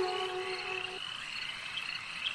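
The held note of flute background music fades and ends about a second in, leaving a faint, steady chorus of calling frogs.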